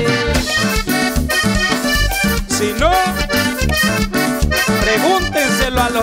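A live Latin dance band plays an instrumental passage with no singing: a keyboard melody over electric bass, drums and the steady scrape of a metal güiro.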